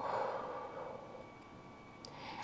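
A woman exhaling deeply through the mouth: one long breathy rush that fades away over about a second.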